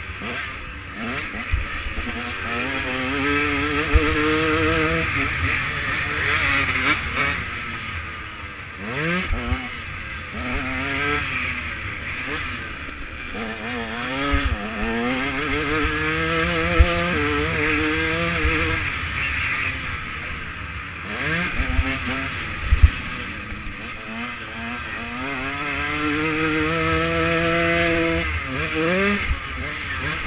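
KTM 150 SX two-stroke motocross engine heard from the rider's helmet camera, revving up in long rising sweeps and dropping sharply off the throttle over and over as the bike is ridden hard round a dirt track. A few sharp thumps stand out, the loudest near the end.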